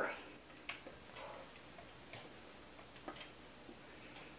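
A few faint clicks and taps of a whisk against a metal saucepan as thick flour-and-milk pudding is scraped out into a baking dish.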